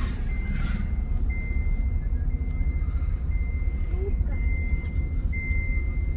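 A car running on the road, heard from inside the cabin as a steady low rumble, with an electronic warning beep repeating about once a second, each beep long with a short gap between.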